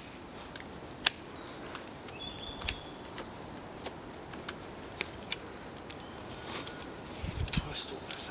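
Honeysuckle being snipped and stripped off a freshly cut hazel stick with a hand pruner: scattered sharp clicks and snaps, a few seconds apart, with some low handling thumps near the end.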